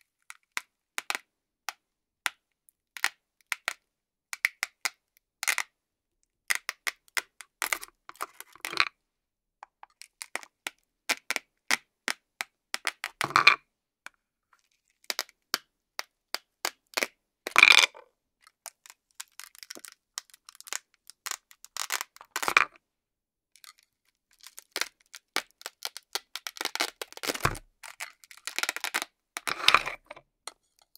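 Velcro discs joining toy play-food pieces being pried apart with a knife: a run of short crackling rips and clicks, with about five louder, longer rips. Near the end there is a knock as a cut piece lands on the board.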